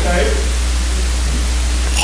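Steady hiss with a strong low hum from a church sound system's microphone chain, left exposed when the preacher stops talking. The tail of a man's speech fades out at the very start.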